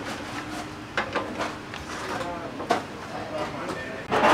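Background voices and chatter in a busy restaurant kitchen, fainter than close speech, with a few short knocks about a second in and again near the end.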